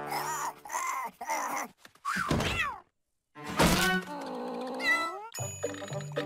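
Cartoon cat characters making wordless, cat-like vocal sounds: short exclamations with pitch glides, a brief silence just before the middle, then one longer swooping call. Background music with a stepping bass line comes in near the end.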